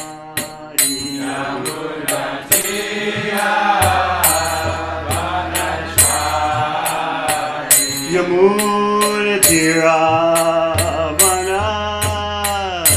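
A man's voice chanting a Vaishnava devotional mantra to a sung melody, with metal hand cymbals (kartals) striking a steady beat of about two to three strokes a second. A low held drone sounds underneath at times.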